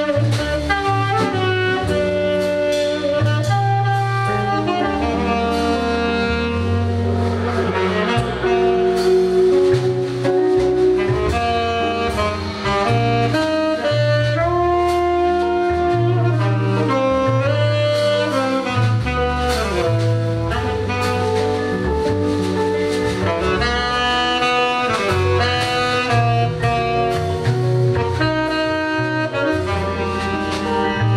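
Live jazz quartet: a tenor saxophone plays held melody notes over a guitar, a double bass and a drum kit with ride cymbal.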